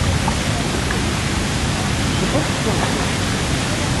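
Steady rushing noise of wind buffeting the camera microphone, with a rumbling, uneven low end. Faint voices can be heard under it.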